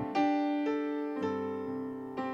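Slow, soft piano chords, a new chord struck about every half second, each fading gently as it rings.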